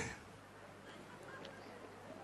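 Quiet hall room tone with faint, indistinct short sounds from the audience.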